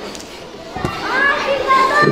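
An audience of young children calling out and chattering in a large hall, building up after about a second, with one dull thump just before.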